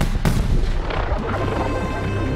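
A quick string of sharp cartoon explosions with a deep rumble, mostly in the first half second, over film score music that carries on with held notes.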